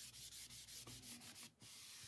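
A cloth rubbed quickly back and forth over a sheet of printed label paper, a faint scrubbing in short strokes that stop about one and a half seconds in.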